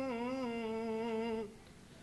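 A man's unaccompanied voice chanting an Arabic qasida, holding one long note that sways slightly in pitch. The note breaks off about a second and a half in.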